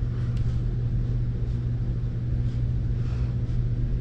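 A steady low hum with a faint hiss over it, unchanging in level.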